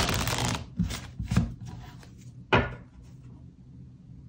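A tarot deck being shuffled by hand: a rustle of cards, then a few sharp card strokes, the loudest about two and a half seconds in, and the shuffling stops about three seconds in.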